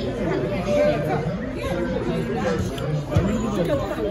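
Several people talking at once: overlapping chatter of voices with no words clear.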